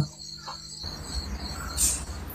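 Crickets chirping steadily in the background, with a low rumble coming in about a second in and a short hiss near the end.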